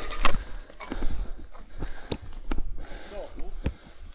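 Irregular knocks and clicks, roughly two a second, over a low rumble of wind on the microphone, as a mountain bike with a snapped rear derailleur is moved along a forest trail. A distant voice is heard briefly about three seconds in.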